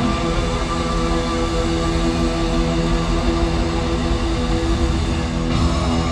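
Live rock band in an arena, recorded from the stands: loud distorted electric guitars hold a ringing chord. A sudden crash comes about half a second before the end.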